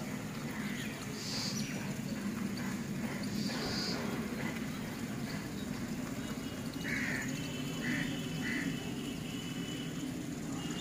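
Outdoor ambience with a steady low rumble and short bird calls: two high calls in the first few seconds, then three lower calls close together near the end.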